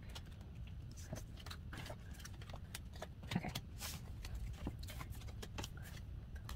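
Small photocards tapping and clicking as they are picked up, stacked and set down on a tabletop, a scatter of light, irregular ticks over a faint steady low hum.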